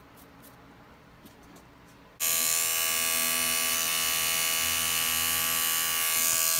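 Electric hair trimmer with a T-blade, switched on about two seconds in, then running with a steady buzz as it shaves arm hair. It is testing a blade just sharpened with a blade modifier.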